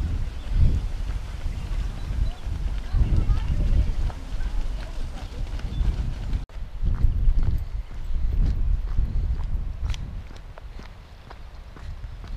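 Wind buffeting the microphone in irregular low gusts, with footsteps and faint voices underneath. The sound breaks off sharply for an instant about six and a half seconds in.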